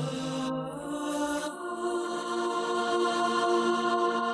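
Isolated synth-pop backing vocals, separated from the full mix with a source-separation tool: long, sustained sung notes that shift pitch about a third of a second in and again about a second and a half in.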